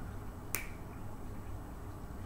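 A single sharp plastic click about half a second in, from the dry-erase marker being handled as a number is written on the whiteboard; otherwise only quiet room tone.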